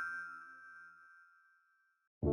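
The last notes of a short logo jingle: chime-like tones ringing out and fading away, leaving silence about a second and a half in.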